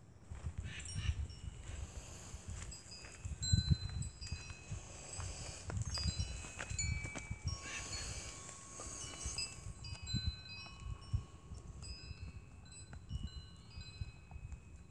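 Wind chimes ringing, many clear metallic notes at different pitches overlapping and fading, with irregular low rumbling underneath.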